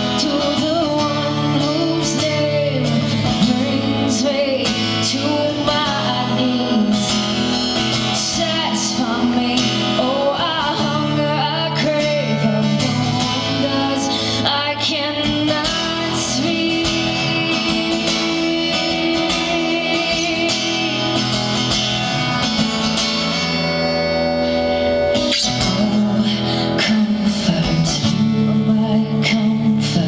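A woman singing a song live into a microphone while strumming an acoustic guitar, amplified through the venue's sound system.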